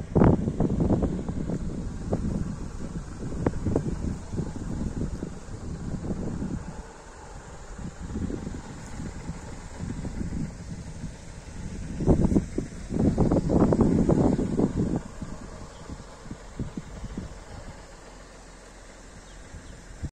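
Wind buffeting the microphone in irregular gusts. They are strongest over the first few seconds and again about twelve to fifteen seconds in, then ease off.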